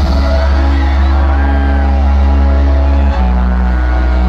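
Electronic dance music played loud over a festival sound system: heavy held bass under long sustained synth chords, the bass note changing about three seconds in.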